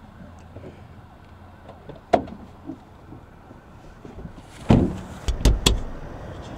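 Low steady hum of a car heard from inside the cabin, with a sharp click about two seconds in. Near the end come three or four loud thumps and knocks of a car door being opened and handled.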